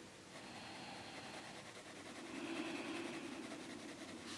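Derwent Inktense pencil shading on colouring-book paper: a faint, steady, fine scratching as the lead is stroked lightly back and forth. A soft low rumble swells for about a second past the middle.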